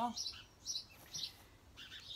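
A small bird chirping in short, high notes repeated about twice a second.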